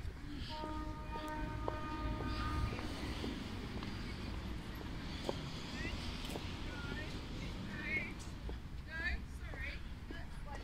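Outdoor ambience by a harbour: a steady low rumble, with distant voices. A held pitched tone sounds for the first couple of seconds, and short high chirps come near the end.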